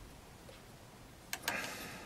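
A black sculpting stand being handled and turned: two sharp clicks about a second and a half in, then a short rubbing scrape.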